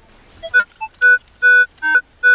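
Metal detector giving short, repeated target beeps, about two a second, as its coil passes over a buried metal object: a strong signal.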